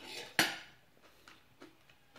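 Tableware clinking: a small glass sauce bowl and cutlery knocking against a plate, with one sharp clink about half a second in and a few faint ticks after it.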